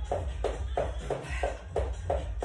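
Footsteps of a person running on the spot in trainers on a wooden floor, an even tapping of about three steps a second, with music playing underneath.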